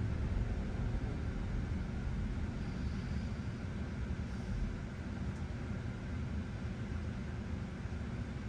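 Low, steady road and tyre noise inside a Tesla electric car's cabin, easing slightly as the car slows to a stop at a red light.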